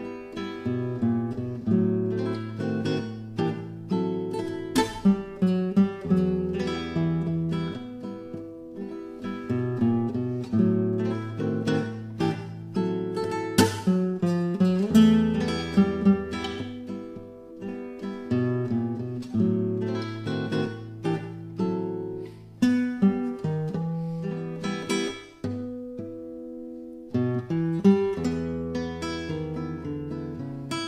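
Instrumental music: acoustic guitar picking notes and chords over held bass notes, with the bass dropping out briefly near the end.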